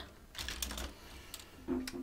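Small plastic clicks and clatter of K'nex parts and golf balls being handled in the calculator's mechanism, several light clicks in the first second and one more a little later.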